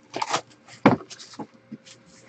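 Plastic shrink wrap crinkling as it is pulled off a trading card box by hand, with a sharp knock on the table about a second in.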